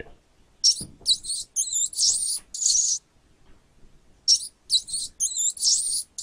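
Recording of a rat squeaking: two bouts of high-pitched squeaks, each about two seconds long, with a short pause between them.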